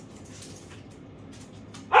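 A husky lets out one short, loud bark near the end, after a stretch of low room noise.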